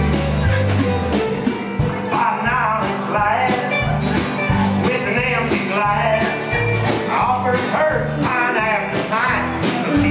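Live country-rock band playing an instrumental passage: drums, bass, electric and acoustic guitars and pedal steel guitar over a steady beat. From about two seconds in, a lead line of bending, sliding notes rides on top.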